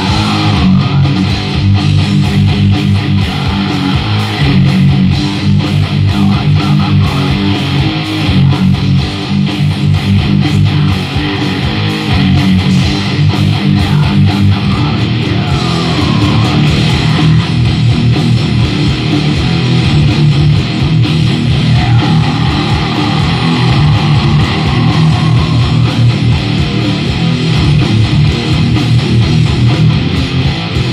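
Electric guitar playing fast heavy metal riffs, picked rapidly and without pause.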